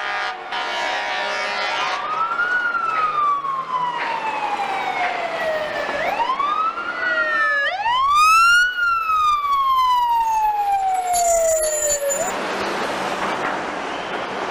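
Fire engine siren wailing three times, each wail a quick rise followed by a long, slow fall in pitch. A short, loud blast cuts in at the top of the third wail.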